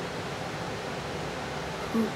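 Steady background hiss, with a brief murmur of voice near the end.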